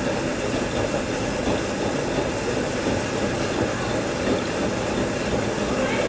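A steady, loud mechanical rumble with a hiss over it, with no clear rhythm, that cuts off suddenly at the end.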